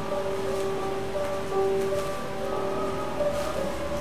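Music: an instrumental passage of long held notes moving slowly from one pitch to the next, with no singing in this stretch.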